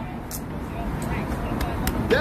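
Street background noise: a steady low traffic rumble with faint voices in the distance and a couple of small clicks.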